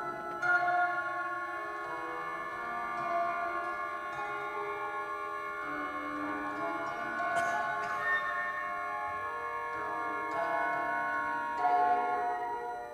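Symphony orchestra playing soft, sustained chords whose notes shift every second or two, with slightly louder accents near the start and just before the end.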